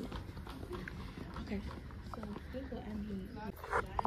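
Quiet, indistinct talking over a steady low background hum, with a brief higher, rising voice sound near the end.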